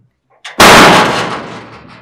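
A single very loud bang about half a second in, dying away over about a second and a half.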